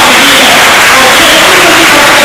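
A man speaking in a loud, shouting voice into a microphone, the recording overloaded and heavily distorted.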